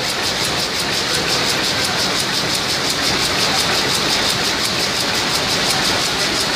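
Rapier loom with an electronic jacquard running at speed while weaving, a loud, steady mechanical clatter with a rapid, even beat.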